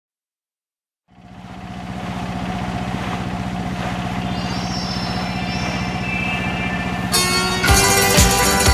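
A motorboat engine running steadily, fading in about a second in. Music with a beat comes in near the end.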